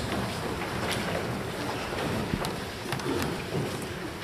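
Hushed room noise with rustling and a few light knocks, as the congregation and choir settle before singing. No music or singing has started yet.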